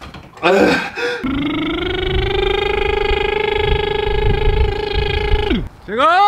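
A man's voice: a short grunt, then one long held vocal note of about four seconds that holds a steady pitch and drops away at the end.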